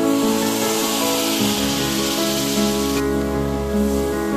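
Background instrumental music over a loud sizzling hiss from tamarind extract being poured into hot oil in a pan; the sizzle cuts off about three seconds in while the music carries on.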